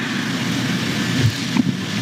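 Steady hiss of background noise, even and without pitch, in a gap between speakers.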